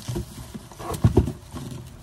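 Plastic grocery bag rustling and crinkling right against the microphone, with a few dull knocks as it is handled, strongest about a second in.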